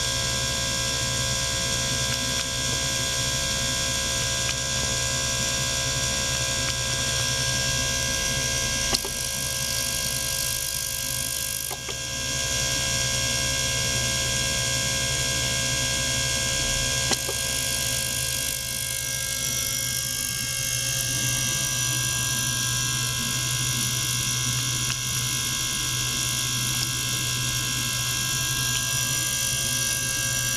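Small ultrasonic cleaner running, its water tank circulated by a small pump: a steady hum and hiss with many held tones over it, and a few brief clicks.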